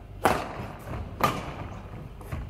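Two badminton racket hits on a shuttlecock about a second apart, each a sharp crack with a short ringing ping from the strings, echoing in a large sports hall.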